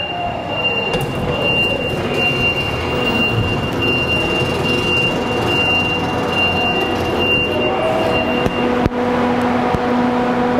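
Loud steady rush and hum of a freezer cold store's refrigeration machinery, growing louder as the door is opened, with a thin high whine that stops near the end.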